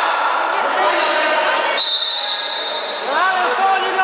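Children's voices shouting and calling in a large, echoing sports hall during an indoor youth football game, with ball thuds on the hall floor. A high, steady whistle-like tone sounds for about a second in the middle, and loud rising-and-falling shouts follow near the end.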